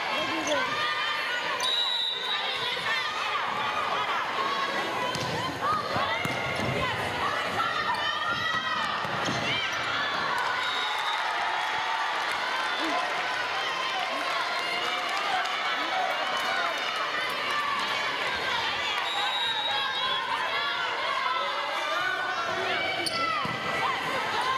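Gymnasium volleyball game: many spectators talking and calling out at once, in a hall with echo, with the ball being hit and a few brief high squeaks, typical of shoes on the hardwood court.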